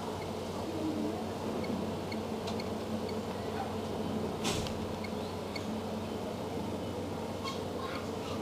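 Outdoor ambience: a steady low hum with a few faint short chirps, and a brief rustle about four and a half seconds in.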